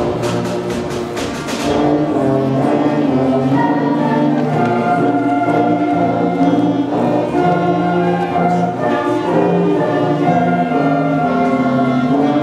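A middle school concert band playing sustained wind chords with flutes and brass, with rapid percussion strikes during the first two seconds.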